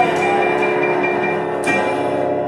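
Stage keyboard holding a sustained chord at the close of a song. There is one short, sharp sound about one and a half seconds in.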